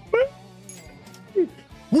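A man's voice giving two brief falling whimper-like yelps, about a tenth of a second in and again near one and a half seconds, over a quiet steady background music bed.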